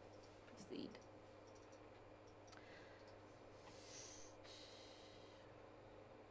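Near silence: studio room tone with a steady low hum, a few faint clicks and a brief soft hiss about four seconds in.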